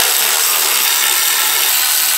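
Cordless electric ratchet spinning a throttle-body mounting bolt into its threads with a steady whir. The bolt is only being run in, not snugged down.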